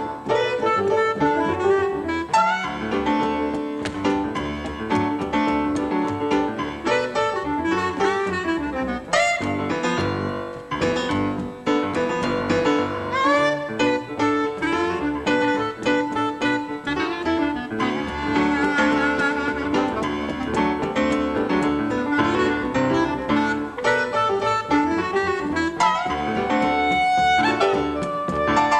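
Live jazz trio of clarinet, piano and plucked double bass playing a funky tune.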